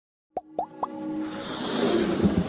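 Three short rising plop sound effects about a quarter second apart, followed by a steadily swelling riser with music building underneath: the sound design of an animated logo intro.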